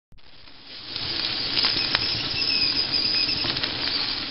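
Stovetop whistling kettle heating toward the boil: a hiss that swells over the first second or so, with scattered crackles and a faint wavering whistle starting to sound around the middle.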